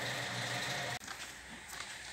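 A steady low mechanical hum cuts off suddenly about halfway through. What follows is a quieter room background with a few faint ticks.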